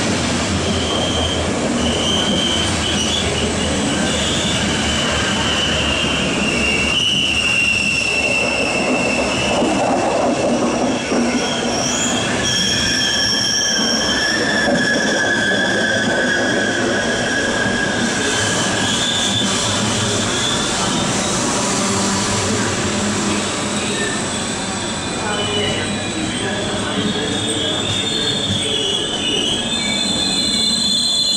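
Passenger coaches of an ÖBB Nightjet night train rolling past along the platform, with steady rolling noise and some clickety-clack from the wheels. Wheel squeal rises and fades in several high tones that drift slightly in pitch.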